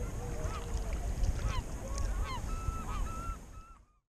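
A flock of waterbirds calling, many short overlapping calls, over a steady low rumble; it all fades out near the end.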